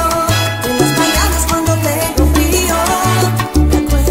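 Salsa music playing loud and continuous, with a bass line of short, offbeat notes under pitched instrumental lines.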